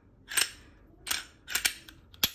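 Glock 43X pistol being cleared, its slide racked back and released by hand: four sharp metallic clacks. This is the safety check that the gun is unloaded.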